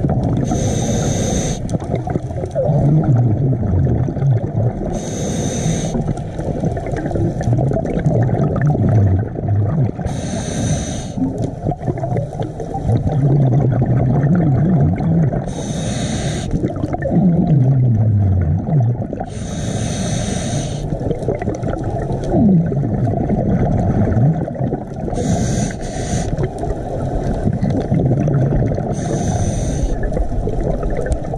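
Scuba regulator breathing underwater: a hissing rush of exhaled bubbles about every four to five seconds, each lasting about a second, over a steady low underwater rumble.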